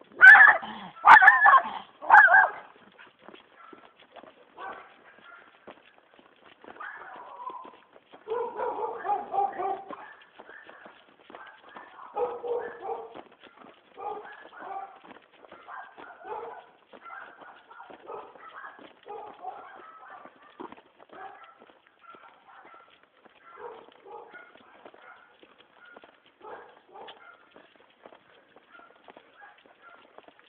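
A dog barking: three loud barks in the first couple of seconds, then more, quieter barking about eight to thirteen seconds in. Faint footsteps on paving tick along throughout.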